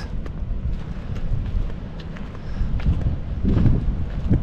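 Wind buffeting the microphone: a low, uneven rumble that swells near the end.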